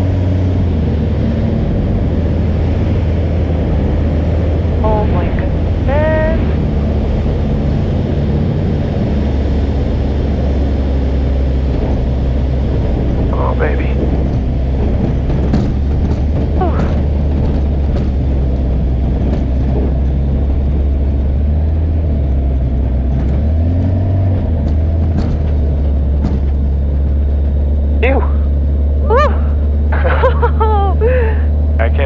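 Kitfox light aircraft engine heard from inside the open cockpit: a steady drone that drops in pitch about nine seconds in as power comes back for landing, and shifts briefly around the two-thirds mark. A few sharp knocks come in the second half.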